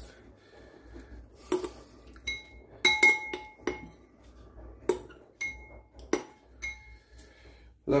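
Metal spoon clinking and scraping against a glass bowl while lifting lemon seeds out of lemon juice: about nine separate sharp clinks, several leaving the glass ringing briefly, the loudest about three seconds in.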